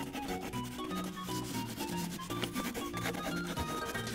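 A wax crayon scratching back and forth on a paper coloring page in quick strokes, with background music of short, stepping notes playing underneath.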